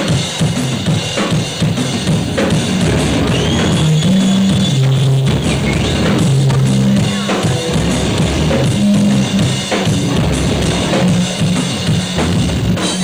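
Live stoner rock band playing a heavy riff: drum kit with electric guitar and bass, the low notes stepping up and down.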